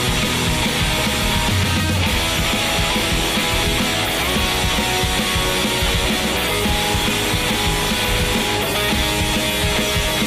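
Rock song playing, led by electric guitar, in a hard punk or metal style, at a steady loud level.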